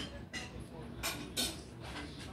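A few short, sharp metallic clicks and scrapes of capacitor wire leads being fitted onto the terminals of a compression driver by hand.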